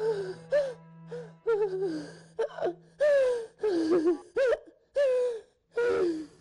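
A woman crying in a run of short gasping sobs and whimpers, with a steady soft music bed underneath.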